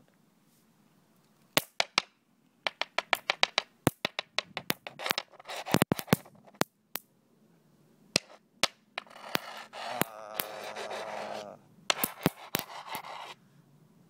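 Nitrogen triiodide contact explosive popping as a rock presses on it: a long, irregular string of sharp pops, some single and some in quick rattling clusters, starting about a second and a half in. The recording does not capture their gunshot-like loudness. A rough scraping noise fills the last few seconds, between further pops.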